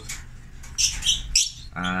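Lovebirds giving a few short, high-pitched chirps in the first second or so. Near the end a man's voice begins a long, drawn-out "uhh".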